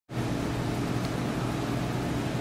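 Steady hum and hiss of equipment running in an aquarium exhibit hall, with a constant low drone under an even hiss.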